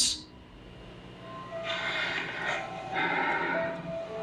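Eerie ambient background music: a few held tones under a hiss that swells in about a second and a half in and again near the end, after a quieter opening second.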